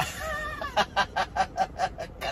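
A man laughing heartily: a drawn-out note, then a run of quick 'ha-ha' bursts about five a second.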